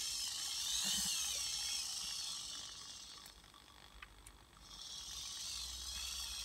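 Hobby servo in a robot arm's shoulder, whining as its geared motor drives the arm toward a commanded 180 position. The high whine wavers in pitch over the first two seconds or so, dies away with a couple of faint clicks, then starts again near the end.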